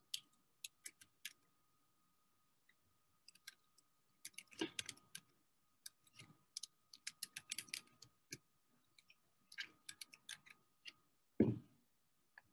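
Keystrokes on a computer keyboard as an email address is typed: quiet, irregular bursts of clicks with short pauses between them, and a single louder soft thump near the end.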